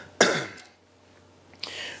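A man coughs once, sharply, about a fifth of a second in.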